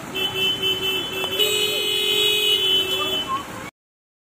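A vehicle horn held in one long blast of about three seconds, its pitch stepping up slightly partway through, over street noise. The sound then cuts to silence shortly before the end.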